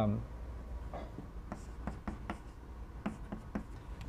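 Chalk writing on a blackboard: a string of short taps and scratches as a few symbols are chalked on.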